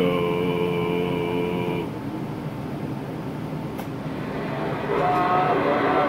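A steady pitched tone with many overtones, held for about two seconds after sliding up into place, then a quieter hiss, and a second pitched sound in the last second.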